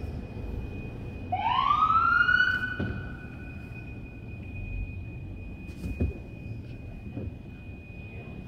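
A police siren giving one short rising wail a little over a second in: it sweeps up, holds briefly and fades within about two seconds, over a low background rumble.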